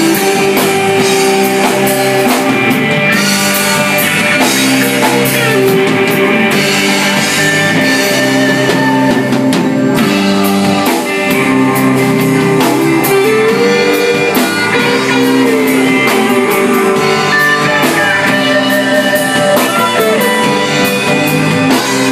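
Live rock band playing a song: electric guitar, bass guitar and drum kit, with a man singing.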